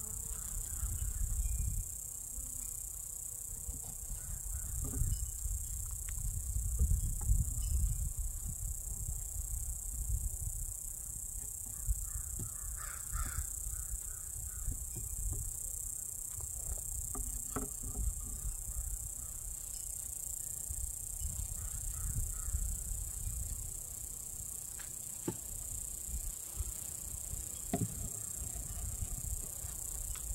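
Metal hive tool scraping and knocking on the wooden top bars of a beehive as they are pushed back into place, a few scattered sharp clicks. Wind rumbles on the microphone, with a steady high hiss behind.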